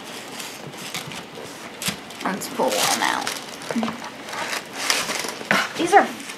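Tissue paper rustling and crinkling as hands dig through the wrapping in a cardboard shoebox, with a sharp tap about two seconds in.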